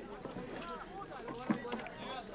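Several people's voices talking over one another, with a single sharp knock about one and a half seconds in.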